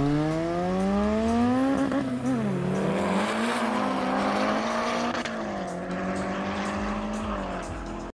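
Modified classic Lada drag car accelerating hard down the strip, its engine pitch climbing and dropping at each upshift, about two seconds in and again around five seconds. It fades as the car pulls away.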